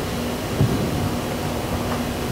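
Steady room tone in a pause between words: an even hiss with a faint steady low hum, and a soft bump about half a second in.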